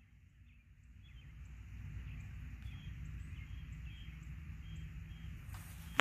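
Quiet outdoor ambience in a rural field: a low rumble that builds up about a second in and holds steady, with faint bird chirps now and then.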